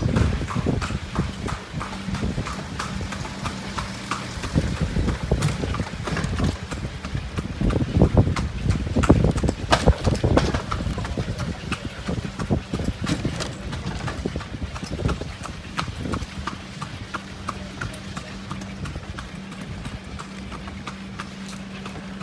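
A carriage horse's hooves clip-clopping at a steady walk on a paved street. A steady low hum runs under much of it, with a louder low rumble around the middle.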